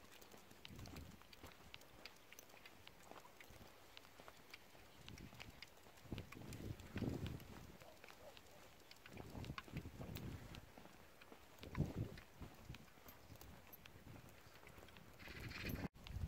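Faint footsteps of a walker and a small trotting dog on a tarmac lane: light ticking steps throughout, with a few soft, muffled swells.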